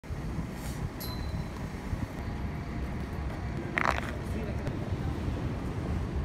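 Outdoor city street ambience: a steady low rumble of urban background noise, with a short snatch of a voice about four seconds in.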